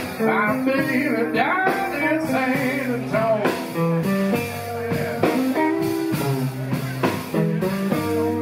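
Live blues band playing: a harmonica plays bending, gliding notes over electric guitar and drums.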